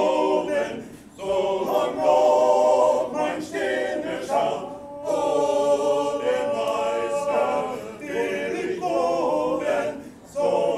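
Small male chorus of about seven voices singing a cappella in harmony. The phrases are separated by short breaths, and a long chord is held in the middle.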